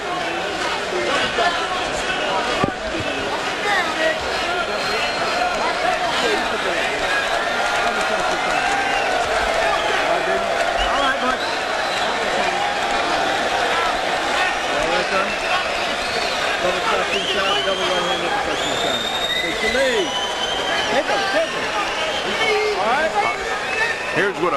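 Boxing arena crowd: many voices talking and shouting over one another in a continuous din, with scattered louder yells rising above it, most noticeably a little before the end.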